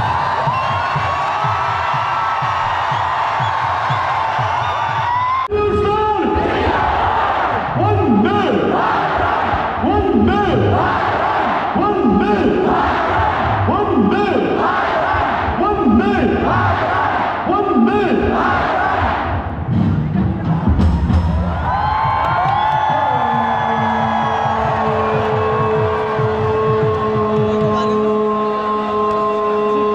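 Large stadium crowd and loudspeaker music at a military border ceremony. For about fifteen seconds a chant repeats in a steady rhythm, about once a second. Near the end a single voice holds one long, drawn-out note, like a parade command shout.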